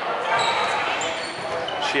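Dodgeball play on a wooden sports-hall court: balls bouncing and players' voices, echoing in the large hall.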